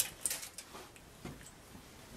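A few light clicks in the first half second, then faint room tone.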